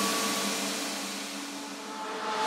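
Breakdown in a hardcore techno track: the kick drum and bass drop out, leaving a hissing noise wash with a few held synth tones that fades and then swells again.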